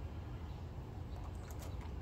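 Quiet outdoor background: a faint, steady low rumble with no distinct event.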